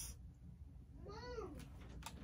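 A single short high call about a second in, rising and then falling in pitch over about half a second, against a quiet room.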